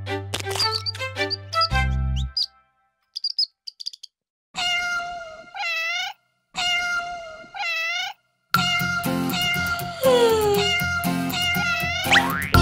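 A cartoon cat meows twice, two near-identical long calls, each held and then wavering at its end. Before the meows, the last notes of a song die away into a few faint bird chirps. About eight and a half seconds in, a bouncy children's tune starts with a falling slide.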